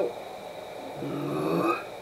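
A person burping once, a low belch of under a second, about a second in.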